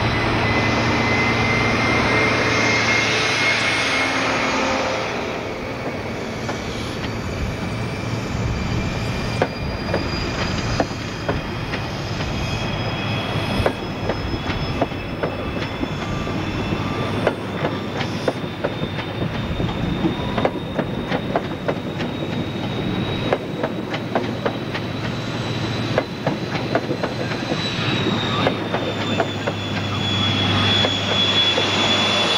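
InterCity 125 HST pulling out past the platform. The leading diesel power car's high engine whine rises slowly in pitch as the train gathers speed, then the coaches roll by with a steady clickety-clack over the rail joints. The whine of the rear power car swells again near the end.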